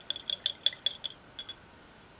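A paintbrush stirred in a small glass jar of cleaning fluid, knocking against the glass in a quick run of about a dozen light clinks that stop about a second and a half in.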